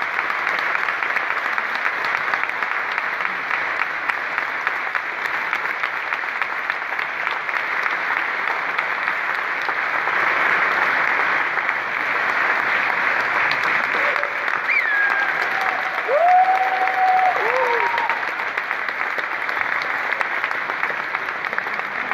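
Theatre audience applauding steadily. A few brief calls from the crowd rise over the clapping in the second half.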